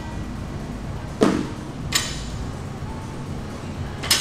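Loaded barbell set down on a wooden lifting platform at the end of a set of rows: two sharp knocks about two-thirds of a second apart. Background music plays throughout.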